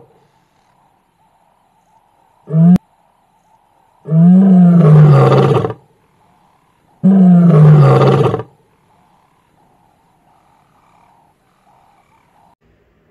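Male lion roaring: a brief call, then two long roars a few seconds apart, each about a second and a half long and falling in pitch.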